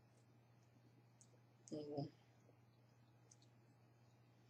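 Near silence while eating, with a few faint clicks from chopsticks or the mouth and a low steady hum underneath. About two seconds in comes a short voiced "mm" sound.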